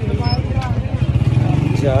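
A man's voice speaking a few words to the camera over a steady low rumble.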